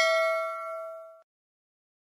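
Notification-bell sound effect on a subscribe end-screen: one bright bell ding with several ringing pitches, dying away and ending a little over a second in.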